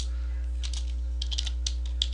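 Computer keyboard typing: a quick, irregular run of keystroke clicks, over a steady low electrical hum.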